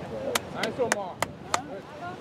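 Five sharp hand claps, about three a second, over distant shouting voices.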